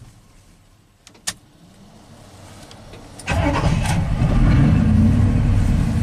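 The 1987 GMC 1500 truck's engine, switched off and warm, is restarted: a sharp click about a second in, then the engine catches a couple of seconds later and runs steadily and loudly. It starts readily warm, the condition under which it used to misfire, stall and be hard to start before the ignition repair.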